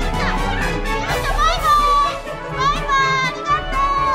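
Shrill, high-pitched shrieks and cries with long rising and falling pitches, over steady background music.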